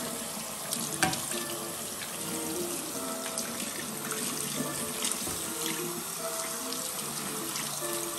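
Bathroom tap running steadily into a sink as a wet brush roll is rinsed under the stream, with water splashing off it into the basin. There is one sharp knock about a second in.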